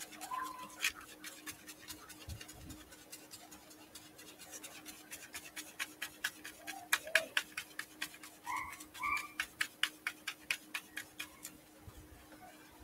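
A dauber loaded with black acrylic paint dabbed repeatedly through a plastic stencil onto paper: a quiet, irregular run of quick tapping clicks, thickest in the second half.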